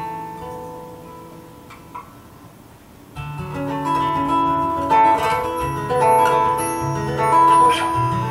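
Small live band playing Brazilian jazz, led by guitar: a guitar chord rings and fades quietly, then about three seconds in the band comes back in louder with bass and a melody line.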